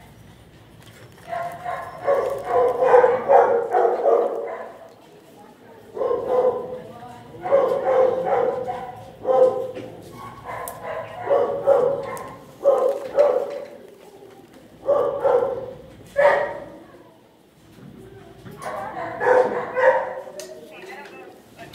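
Dogs barking and yipping in repeated bursts of a second or two, with short gaps between them.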